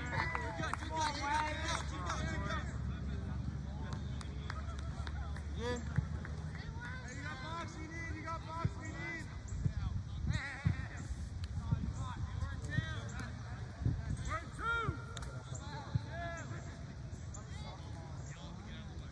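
Scattered shouts and calls of players and sideline spectators at a youth lacrosse game, heard at a distance, with a few sharp clacks from lacrosse sticks.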